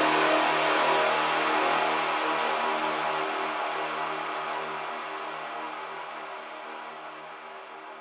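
Outro of an electronic track: a sustained, noisy synth chord fading out steadily, its high end growing duller as it dies away.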